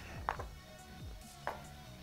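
Two short, light knocks about a second apart as small kit parts and packaging are handled and set down on a glass-topped table, over quiet background music.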